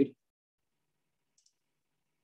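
Near silence, with one faint, short click about one and a half seconds in.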